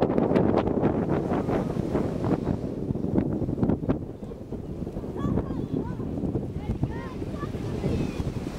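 Wind buffeting the microphone, a heavy rumbling gust noise that is strongest in the first half and eases a little after about four seconds.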